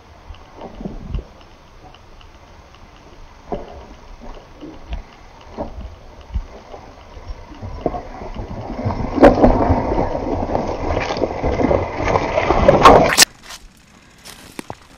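Mountain bike riding down a rock garden toward the microphone: scattered knocks of tyres and bike on rock at first, growing into a loud, dense clatter and rumble of tyres on stone as it comes close, cut off suddenly near the end.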